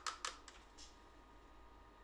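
A few faint ticks in the first half second as diluted liquid medicine is poured from a small plastic cup into an open syringe barrel, then near silence.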